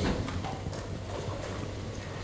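Faint footsteps on a hard floor with light knocks, over the steady room noise of a lecture hall.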